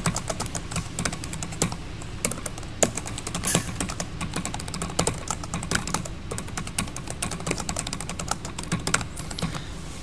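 Typing on a computer keyboard: a continuous run of irregular key clicks, several a second, as a short line of text is typed.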